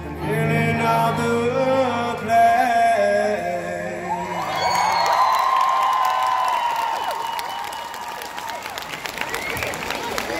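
A live band's music with singing winds down, and about four and a half seconds in it gives way to a crowd cheering and clapping, with a long held tone carrying on beneath.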